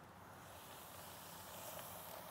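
Faint, steady sizzling of flour-dredged chicken thighs frying in hot oil in a cast-iron pot, growing slightly louder as the pieces go in.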